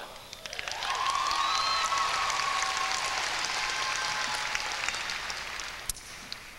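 Audience applauding with some cheering, building about half a second in and fading near the end.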